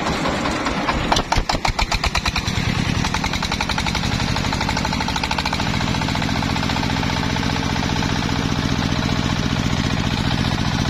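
Single-cylinder diesel engine driving a trailer-mounted circular sawmill: about a second in it gives a run of loud, heavy chugs, then speeds up and settles into a steady, faster chugging run.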